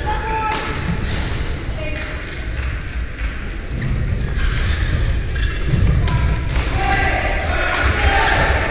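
Badminton rally: sharp cracks of rackets striking the shuttlecock every second or so, with short squeaks of shoes on the court mat and the low rumble of a large hall.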